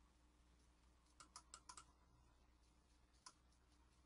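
Near silence with faint clicks at a computer: a quick run of five a little over a second in, then a single click past three seconds.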